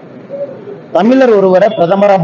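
A man speaking Tamil into a bank of press microphones, starting after a short pause about a second in.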